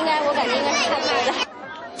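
Speech only: a person talking, stopping about one and a half seconds in, with crowd chatter behind.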